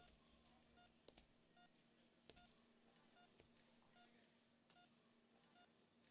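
Faint, regular beeping of a hospital heart monitor: a short tone about every 0.8 seconds, keeping pace with a pulse, over a low steady hum.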